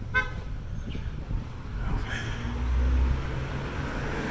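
A short vehicle horn toot just after the start, over street traffic noise; a vehicle engine rumble then grows louder about three seconds in as traffic passes.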